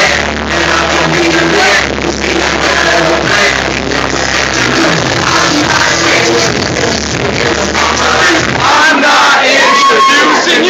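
Live hip-hop performance heard from inside the crowd: a loud backing beat with heavy bass and a rapper's voice over it, with crowd voices underneath. Near the end the bass drops out, leaving the voices more exposed.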